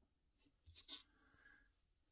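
Near silence, with a few faint brief scuffs of hands moving a pattern template and a piece of soft leather over a cutting mat, about halfway in.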